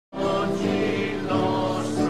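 A choir of voices singing a slow religious song in long held notes.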